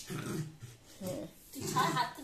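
A small dog growling in short rough bursts while playing with a person's hand, the last burst higher and brighter near the end.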